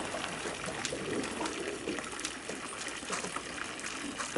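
Water trickling and dripping near the boat, with scattered small ticks and clicks.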